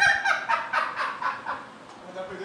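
A comic animal-call sound effect laid over a studio broadcast: a run of quick pitched calls, about four a second, that dies away after about a second and a half.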